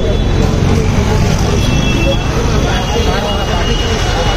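Busy street traffic at night: a steady rumble of auto-rickshaw and motorcycle engines mixed with the chatter of a crowd of passers-by.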